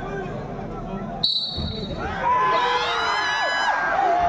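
Crowd chatter, then a short, sharp whistle blast about a second in, likely the referee's signal to start the wrestling bout. From about two seconds in, the crowd breaks into loud shouting that carries on to the end.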